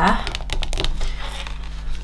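Paper crinkling and rustling as scrapbook layers are handled on the page: a quick run of small crackles in the first second, then quieter handling.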